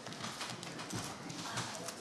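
Papers and objects being handled on a speaker's table near a desk microphone: irregular light knocks and rustles, with faint murmured voices in the room.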